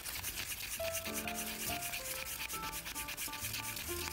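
A flat stir stick scraping round and round the inside of a paper cup of acrylic pouring paint, in quick repeated strokes, over background music.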